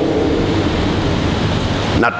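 Steady rushing background noise with a faint low hum.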